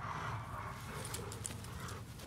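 A young American Bandog tugging on a bite sleeve, with low rough sounds from the dog. A few small clicks and scuffs come about a second in.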